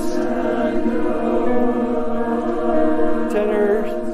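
University choir singing sustained chords in a slow choral piece, the voices holding long notes, with the harmony shifting a little past three seconds in.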